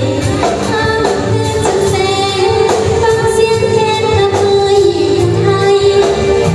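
Live band playing a Lao dance song, a woman singing lead in long held notes over bass and a steady drum beat.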